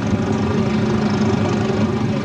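A motor engine running steadily, an even low hum with no change in pitch.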